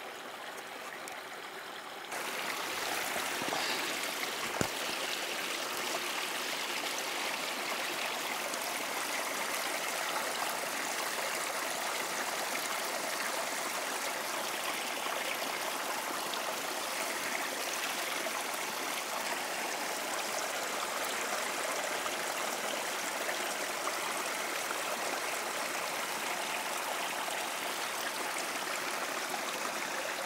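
Steady rushing of a hillside stream, which gets louder about two seconds in, with a single sharp click about four and a half seconds in.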